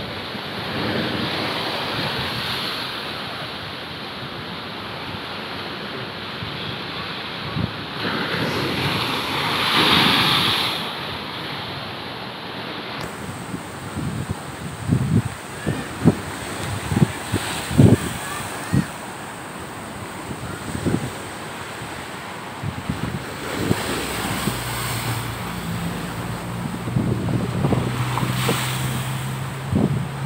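Rough surf breaking and washing against a seawall, with wind buffeting the microphone. The waves surge loudest around ten seconds in, and several short thumps come in the middle. A low steady hum joins near the end.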